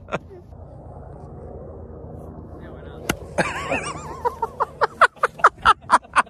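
Golf cart running with a low steady drone, a sharp click about three seconds in, then a brief wavering high-pitched sound. Bursts of laughter fill the last couple of seconds.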